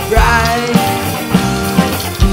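Rock band music: electric guitars, bass guitar and drum kit playing an instrumental passage with a steady beat, a lead line bending in pitch near the start.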